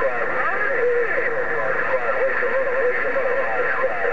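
Another station's voice coming through a President HR2510 radio's speaker on 27.085 MHz: narrow, tinny speech over steady static hiss.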